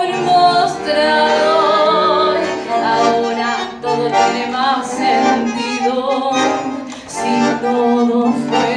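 Live tango played by a small ensemble, a bandoneón carrying the melody over accompaniment.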